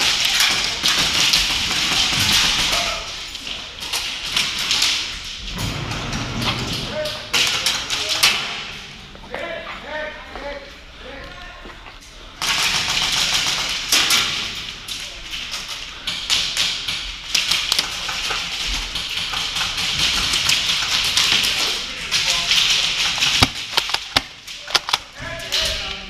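Busy sounds of an indoor airsoft game on a concrete floor: a player's movement and gear, taps and thuds, voices of other players, and a few sharp airsoft gun shots toward the end.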